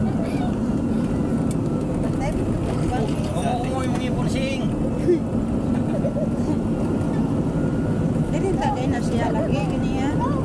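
Steady engine and road rumble of a vehicle driving along a road, with a brief bump about five seconds in.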